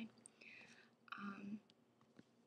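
A woman's faint whispered voice: two short, soft sounds in the first second and a half, between spoken sentences.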